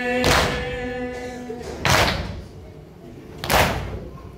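Group of mourners striking their chests in unison (matam), three loud slaps about one and a half seconds apart, keeping the beat of a nauha. A men's chorus holds a long chanted note under the first two slaps, then falls away.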